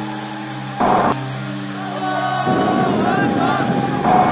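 Intro music with held, sustained notes. About a second in, a short, loud burst of noise cuts across it, and from about two and a half seconds a dense noisy wash with some wavering voice-like sounds joins the music.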